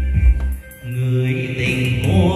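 Karaoke music playing loud through a home sound system of digital echo processor, amplifier and speakers: a deep bass beat, a short drop just over half a second in, then long held notes.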